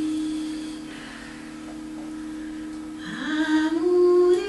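A woman singing into a microphone: one long, low held note that fades away, then a swoop upward into a louder, higher note of the next phrase about three seconds in.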